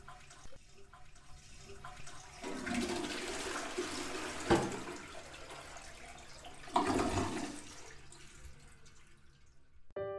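Toilet flushing: rushing water swells about two seconds in, then slowly dies away as the bowl drains. Two sharp knocks stand out, one about four and a half seconds in and another about seven seconds in.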